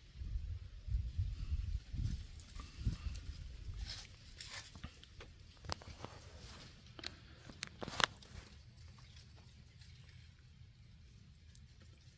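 Quiet outdoor ambience, with a low rumble on the microphone for the first three seconds, then scattered light clicks and taps, the sharpest about eight seconds in.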